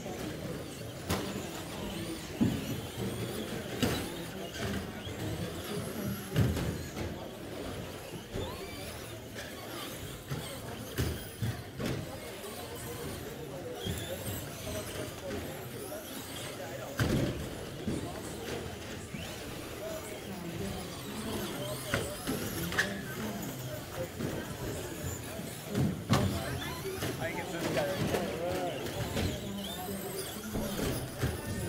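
Traxxas Slash RC short-course trucks running on an indoor track, with several sharp knocks as trucks hit the boards or each other, under voices in the hall.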